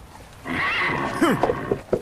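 A horse neighing, starting about half a second in and lasting about a second, with its pitch gliding and falling.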